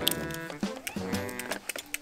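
A mixed-breed dog crying in two drawn-out, moaning whines about a second apart, wanting a closed sliding glass door opened. Light background music with a steady tick runs underneath.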